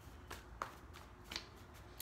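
A deck of tarot cards being shuffled by hand: a few faint, short strokes of the cards.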